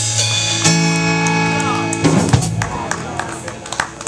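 Live blues-rock band with electric guitars, bass and drum kit ending a song: a chord is held, cuts off about halfway through, and a few drum and cymbal hits follow as the music dies away.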